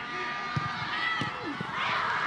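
Live pitch sound of a football match: players shouting short calls, with a thud of a ball being kicked about half a second in. Near the end a rising rush of noise swells up.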